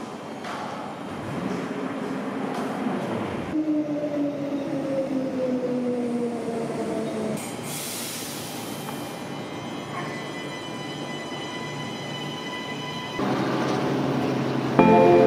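Queensland Rail electric suburban train pulling into a platform: its motor whine falls steadily in pitch as it slows, then a burst of air hiss, then a steady hum as it stands. A louder sound comes in near the end.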